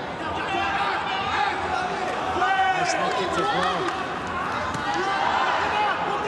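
Voices shouting and chattering in an arena crowd during a Muay Thai fight.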